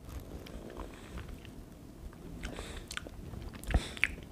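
Faint mouth sounds of someone eating a spoonful of soft mousse: quiet smacking and small clicks, with one sharper click near the end.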